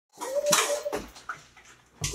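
A small dog making one high, held cry for most of a second, with a sharp click partway through, then quieter sounds.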